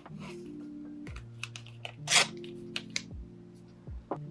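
Paper washi tape being handled over soft background music: a scatter of light taps and crinkles, and one sharp rip about two seconds in as a strip is pulled and torn from the roll.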